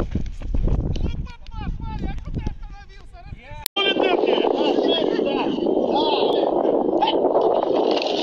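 Several voices on a football practice field, shouting and calling over one another, with microphone rumble in the first seconds. The sound cuts out abruptly partway through, then comes back as a steady crowd of overlapping voices calling out.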